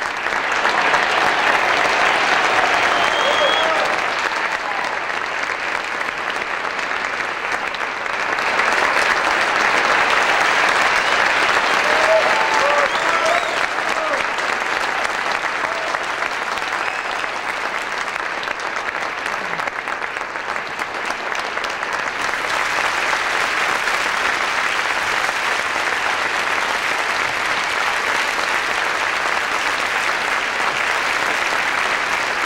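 Theatre audience applauding steadily through a curtain call, swelling louder about a second in and again around eight seconds in, with a few voices cheering from the crowd.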